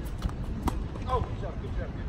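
Tennis ball being struck by a racket and bouncing on a hard court during a rally, as a few sharp knocks, the clearest about two-thirds of a second in.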